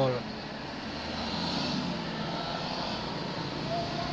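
Steady vehicle and traffic noise heard inside a car cabin, with a faint low hum underneath.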